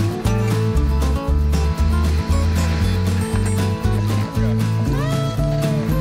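Background music: a country-style track with a steady, stepping bass line and guitar.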